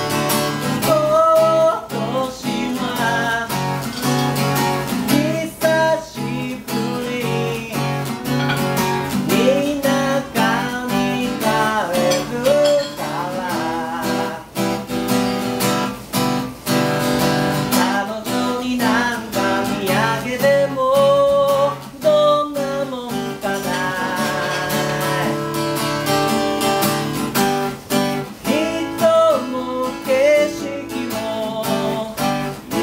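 Acoustic guitar strummed steadily under male voices singing a song.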